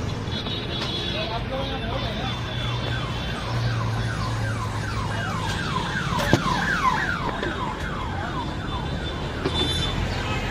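An electronic siren sounding a rapid series of falling wails, about three a second, growing louder toward the middle and fading out near the end, over a steady street-traffic rumble. One sharp clink comes a little past halfway.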